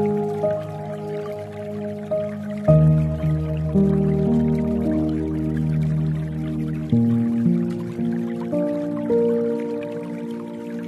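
Slow, soft relaxing piano music: gentle melody notes over held low chords, the chord changing about three seconds in and again about seven seconds in.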